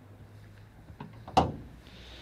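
A 2002 Porsche Boxster S's front bonnet being opened: a faint click about a second in, then a single sharp clunk from the bonnet latch as the lid comes up.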